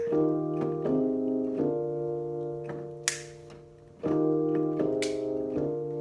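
Electric keyboard playing sustained piano-voiced chords. The chords change every second or less, then one is left to ring and fade for about two seconds before a new run of chords begins.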